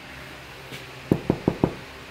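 Four quick knocks on a car, evenly spaced a little under a fifth of a second apart, about a second in.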